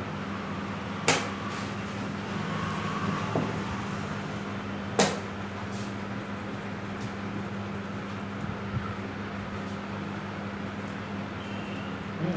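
Two sharp clicks about four seconds apart, the buttons of a digital chess clock being pressed as each player completes a move in a fast game. A steady low hum runs underneath.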